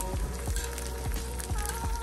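Onions, garlic, scallion and tomatoes sizzling in olive oil in a frying pan as they are stirred with metal tongs, with a few light clicks, under soft background music.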